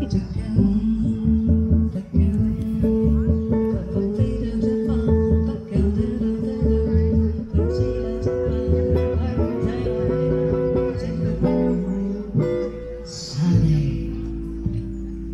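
Small live jazz trio playing: acoustic guitar and upright double bass under a woman singing, with held notes over a walking bass line. Near the end the playing thins out and a short noisy burst is heard.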